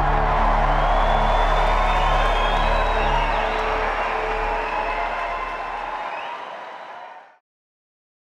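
Live rock concert ending: a held final chord dies away under audience cheering and applause, and the whole sound fades out to silence a little after seven seconds in.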